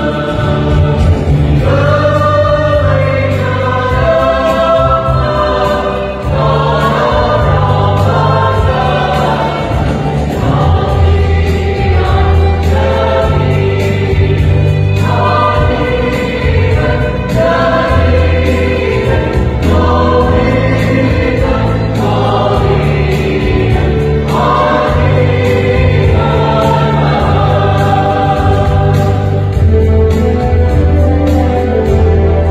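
Mixed choir of women's and men's voices singing a Christmas hymn together, over a low accompaniment of held bass notes that change every second or two.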